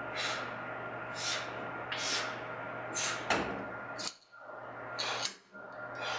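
A man breathing hard and rhythmically, about one breath a second, recovering from an exhausting weight-machine set. A single sharp click about three seconds in as the machine's weight stack is adjusted to lighten the load.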